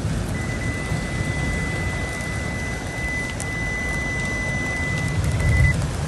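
Heavy rain pouring down on a flooded street, with a steady low rumble underneath. A single steady high-pitched tone sounds through most of it and stops shortly before the end.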